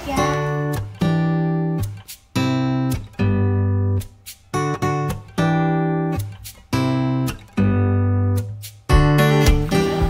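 Background music: guitar chords strummed in short stop-start blocks, about one a second, with brief gaps between.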